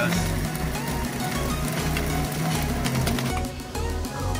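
JTC OmniBlend V blender running, blending ice for a frozen mango margarita, then stopping a little over three seconds in. Background music with a steady beat plays throughout.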